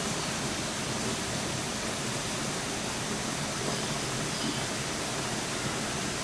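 A steady, even rushing noise that does not change, with no distinct events in it.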